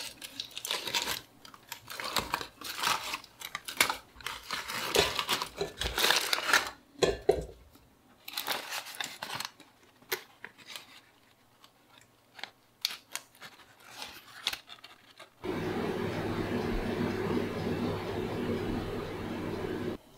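Aluminium foil crinkling and tearing as it is peeled off a roast lamb leg in an air fryer basket, in dense irregular rustles for about eight seconds, then in scattered crackles. A steady low hum takes over for the last four or five seconds.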